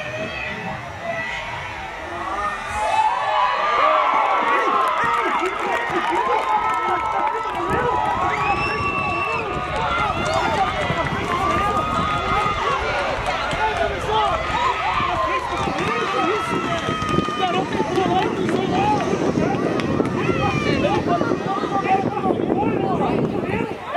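Many voices shouting and cheering over one another, celebrating a goal just scored; the noise swells about three seconds in and stays a dense, unbroken clamour.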